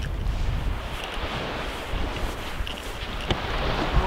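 Wind buffeting the microphone over a steady wash of small surf, with a single sharp click about three seconds in.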